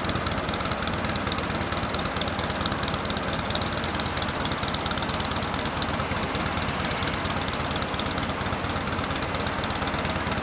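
Steady motor-vehicle engine noise with a fast, even pulse, from the passing motorcade.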